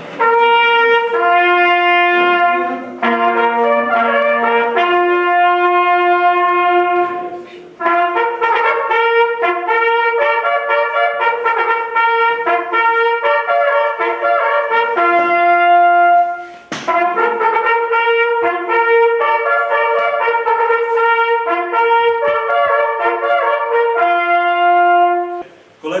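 Two brass hunting horns playing a signal in two-part harmony, in held notes grouped into three phrases with short breaks between them.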